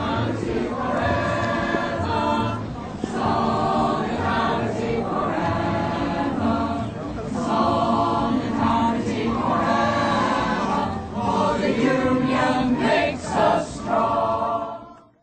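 A choir singing, in sustained phrases with short breaks between them.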